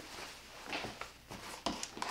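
Fabric rustling as a sewn bag is turned over and repositioned on a cutting mat, with a few light clicks and taps in the second half.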